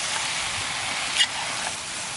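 Lamb pieces with onion, carrot and garlic frying in a large cast-iron kazan, a steady sizzle as a metal skimmer stirs them. There is one short sharp tick about a second in.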